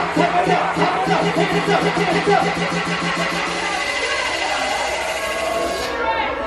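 Loud dance music with a crowd shouting and singing along over it. A fast, evenly pulsing bass note runs through the first few seconds, then drops out.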